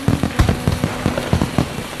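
Fireworks going off: a dense crackle of many quick small pops with deeper bangs mixed in, the loudest about half a second in.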